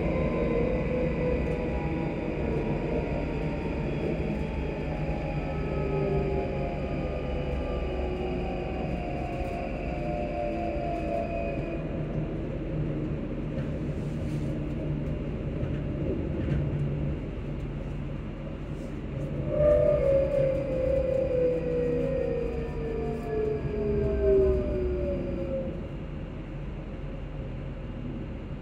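Electric multiple-unit train running with a steady rumble from the carriage and a motor whine that falls in pitch as it slows: one long falling sweep at the start, then a louder one about two-thirds in. It grows quieter near the end.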